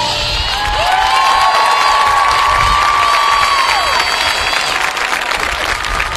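Stadium crowd applauding and cheering as the marching band's music cuts off, with several long, high cheering calls that rise, hold and fall over the clapping.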